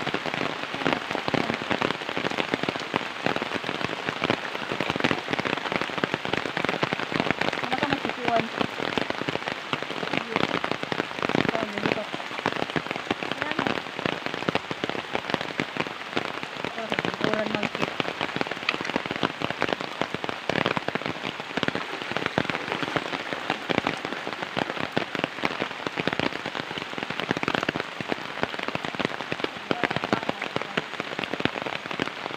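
Steady rain falling on a river surface and gravel bank: a dense, even hiss of many small drop hits.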